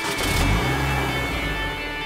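A car engine revving with a low rumble, laid over background music.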